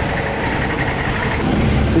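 Honda GX390 single-cylinder engine of a Sodi SR4 rental kart running close by, its pitch rising a little about one and a half seconds in.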